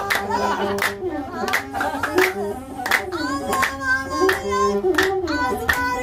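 A woman singing an Ethiopian azmari song in a bending, ornamented line, over steady rhythmic handclaps about one every 0.7 seconds, with a masenqo (one-string bowed fiddle) accompanying.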